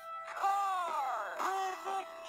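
A slowed-down children's song: the singing voice dragged low and slow, so that each sung word is a long note that sags downward in pitch like a moan, over the music.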